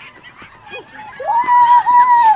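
A child's long, high-pitched shout that rises, holds for over a second and then falls away.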